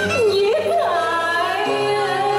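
A woman singing in Vietnamese cải lương style over instrumental accompaniment, her voice sliding down and back up in a long ornamented glide within the first second.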